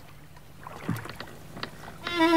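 Faint sounds of a wooden boat on water: soft water noise with scattered creaks and knocks, and a low thud about a second in.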